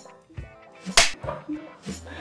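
A single sharp clapperboard snap about a second in, a sound effect for a take-count transition. The background music drops out around it.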